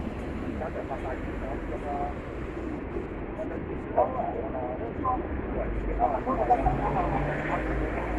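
Street traffic: a steady low rumble of vehicles, with people talking nearby, more voices from about four seconds in.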